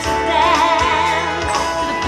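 Live band music with a woman singing into a microphone, her voice carrying a wavering melody over held instrumental tones and a few drum beats.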